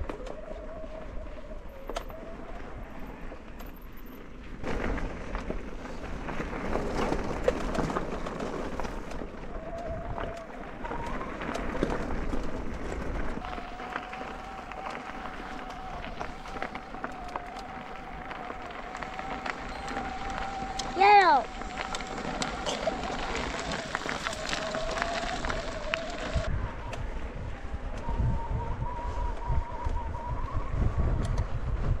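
Mountain bike rolling down a dirt trail with steady wind and trail noise, while a young child's voice holds long wavering notes for about twelve seconds in the second half. The loudest moment, about two-thirds through, is a short rising-and-falling call from the child.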